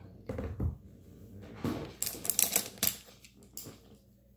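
Small hard plastic makeup items being handled, clicking and rattling together in a quick cluster about two seconds in, after a dull bump of movement near the start.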